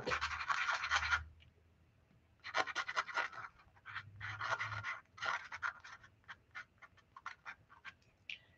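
Black marker tip scribbling on watercolour paper: several bursts of scratchy back-and-forth scribbling with short pauses between, ending in a run of quick short strokes.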